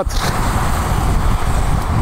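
Wind rushing over the camera microphone on an e-bike ridden at about 32 km/h into a headwind: a steady, loud low rumble with no clear tones.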